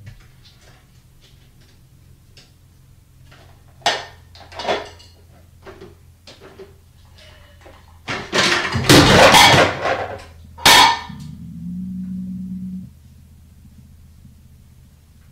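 Plastic Tupperware-style containers knocked off a shelf by a cat: a few light knocks as it paws at them, two sharper knocks about four seconds in, then a loud clatter of containers falling and landing about eight seconds in, with one last knock a second later. A low steady hum follows for about a second and a half.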